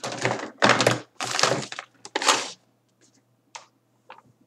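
Hair being handled right beside the microphone: four loud, scratchy rustles in the first two and a half seconds, then only faint small ticks.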